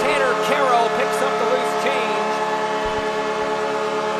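Arena goal horn sounding for a home-team goal: a steady, many-toned chord held throughout, with a siren-like wail rising and falling over it.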